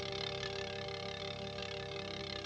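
Roulette wheel spinning with its ball running round the rim, a steady whirring rattle, over soft held notes of orchestral film score.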